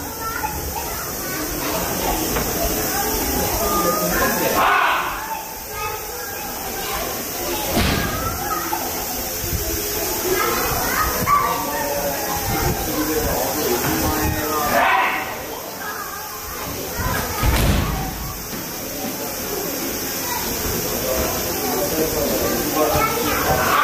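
Voices chattering in a large hall, broken by several heavy thuds of bodies landing on the mat in aikido throws and breakfalls.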